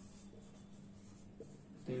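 Whiteboard marker writing on a whiteboard: faint strokes with a few short squeaks as the words are written out.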